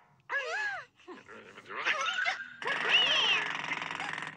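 Cartoon dog characters' wordless voice sounds: short yelping, whining cries that swoop up and down in pitch. Starting about two-thirds of the way in, a louder, harsher stretch of voice.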